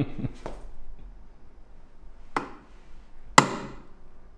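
Click-type torque wrench clicking twice, the second click louder, as it reaches its set torque of about 10 kg·m on a duralumin D16T stud held in a bench vise; the stud takes the load without giving way.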